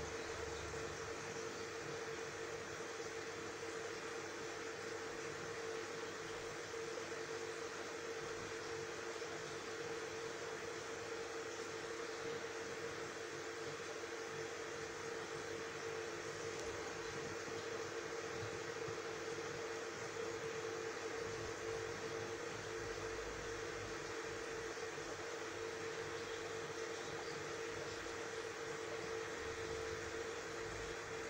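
Saltwater aquarium equipment running: a steady hiss with a constant hum, from the tank's pump and air bubbling.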